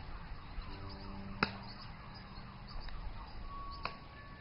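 Sharp knocks, the loudest about a second and a half in and a softer one near the end, over a steady low outdoor rumble with faint whistling tones.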